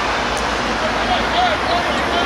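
Steady rushing outdoor background noise with faint, distant voices of players calling out during play.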